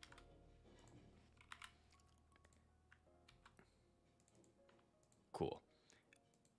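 Faint, light computer-keyboard typing: scattered key clicks while code is edited. There is a short, louder noise about five and a half seconds in.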